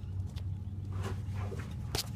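Handling noise from a camera being moved in close among the brake parts: faint rubbing and scraping, with a sharp click just before the end, over a steady low hum.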